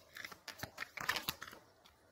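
Tarot cards being shuffled by hand: a quick run of papery flicks and clicks that dies away about a second and a half in.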